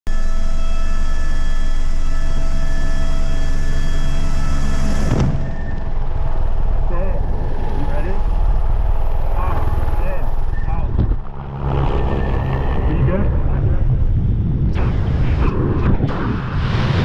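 Helicopter turbine and rotor running loud and steady inside the cabin, with a high whine over it. About five seconds in, the sound changes to rushing wind and rotor wash at the open door.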